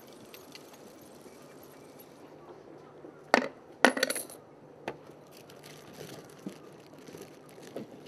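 Coins dropped through the slot of a wooden omikuji (fortune) box, striking with two sharp clinks about half a second apart, the second ringing briefly. After them come small clicks and faint rustling as a hand rummages through the paper fortune slips inside.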